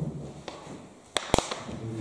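Two sharp clicks about a fifth of a second apart, a little after the middle, against faint low room sound.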